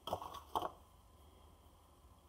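Sticky dough being pressed and rolled by hand, two short soft squishes near the start.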